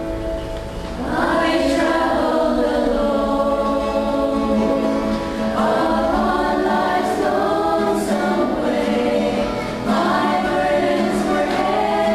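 A small mixed choir of men and women singing a gospel song together, in long held phrases, with new phrases entering about a second in, near six seconds and near ten seconds.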